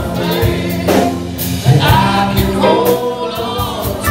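Live band playing a slow blues-rock song with electric guitars and drums, a bending lead melody carried over the top through the vocal microphone.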